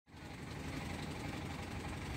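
The engine of a wooden boat running steadily, a low, even rumble.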